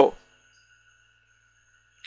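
Near silence after the end of a spoken word, with a few faint steady high tones in the background.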